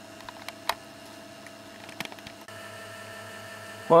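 Steady electrical hum with a few small clicks, the loudest about two thirds of a second in. About halfway through, the hum changes abruptly to a slightly louder one of different pitch.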